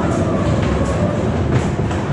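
Ghost train car rolling along its track: a steady low rumble with sharp clacks about every three-quarters of a second.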